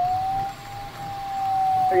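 A single steady electronic beep-tone from the glider's cockpit, its pitch drifting slightly up and then down, held throughout; a radio voice starts over it near the end.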